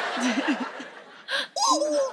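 People laughing, with a man's drawn-out cry near the end.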